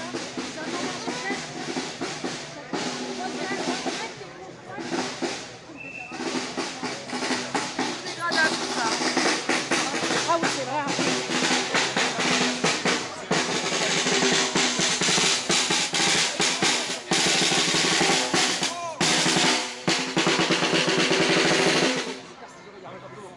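Snare-type drums played in fast rolls, growing louder about eight seconds in and staying loud, with people talking close by.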